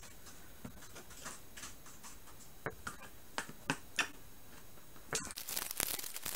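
Cardboard toy packaging being handled and pried open: a scattered series of light, sharp clicks and taps, then a denser crackling rustle near the end as the box's flap comes open.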